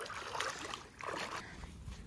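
Bare feet wading through a shallow stream, the water splashing and sloshing in two bouts of steps.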